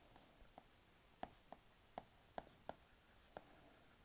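Faint, irregular clicks of a stylus tip tapping on a tablet's glass screen while handwriting, about eight taps.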